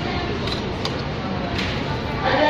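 Busy restaurant dining-room noise: a murmur of background voices with a few light clicks of cutlery and dishes on the table.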